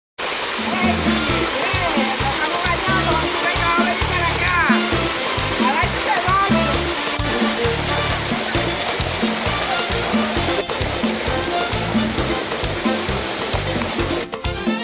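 Waterfall pouring into a swimming pool, a steady rush of water. Voices and music with a bass beat are heard under it.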